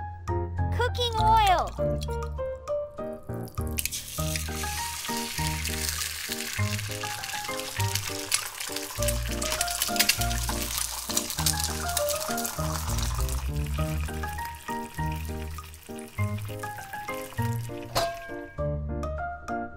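Beaten egg frying in hot oil in a tiny steel wok: a dense sizzle with crackles that starts about four seconds in and fades away after the middle, heard over bouncy background music. A short sliding, voice-like sound comes about a second in.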